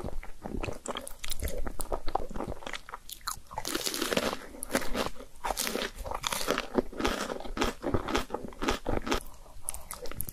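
Close-miked eating: crisp bites and crunchy chewing of breaded, fried mozzarella cheese sticks, with wet chewing and slurping of cheese-sauced noodles between bites.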